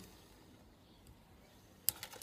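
Near silence, then a single sharp snip near the end as flush cutters cut through fine silver wire.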